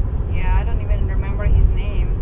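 Steady low road rumble inside a moving car's cabin, under a woman's voice.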